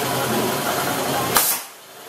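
Steady workshop background noise, cut off about a second and a half in by a single sharp click, after which it drops to a much quieter hush.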